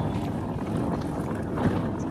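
Wind buffeting the phone's microphone as it is carried along on foot, a steady low rumble.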